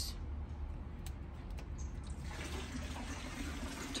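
Water running steadily through backyard pool plumbing over a low, steady hum, with a faint tone joining a little past halfway.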